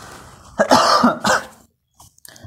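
A man coughing and clearing his throat: a loud rough burst about half a second in, followed by a second shorter one.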